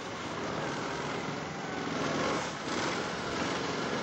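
Argo amphibious ATV on Escargo tracks with angled paddles, driving through deep snow: its small engine running steadily while the tracks churn the snow. It gets a little louder about halfway through.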